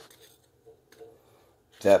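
Near silence: room tone with a couple of faint soft knocks, and speech starts again near the end.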